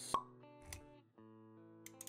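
Intro music of held plucked-string notes, with a sharp pop sound effect just after the start and a softer hit about half a second later.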